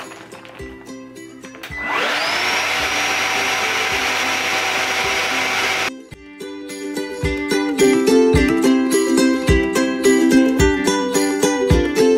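Ryobi 18-volt, 6-gallon cordless wet/dry vac switching on with a rising whine as its motor spins up, then running steadily while it draws the air out of a vacuum storage bag through the bag's valve, and cutting off suddenly about six seconds in. Background music plays before and after, louder with a steady beat in the second half.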